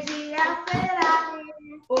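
A young girl singing a Portuguese children's days-of-the-week song, with hand claps.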